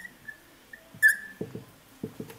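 Dry-erase marker squeaking on a whiteboard in several short strokes, the loudest about a second in, followed by a few soft low knocks.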